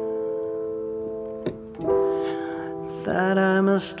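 Piano sound from an electronic keyboard holding sustained chords, with a new chord struck about two seconds in. A male voice starts singing near the end.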